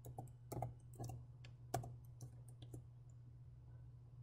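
Computer keyboard typing: about a dozen faint, quick key clicks that stop a little under three seconds in.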